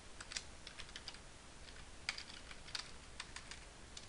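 Typing on a computer keyboard: light, irregular keystrokes a few at a time, with short pauses between.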